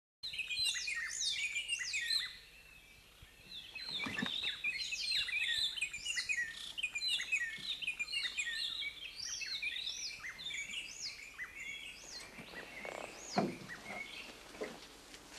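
A dense chorus of tropical forest birds, many overlapping short chirps and whistled calls, thinning out over the last couple of seconds. A brief louder knock comes near the end.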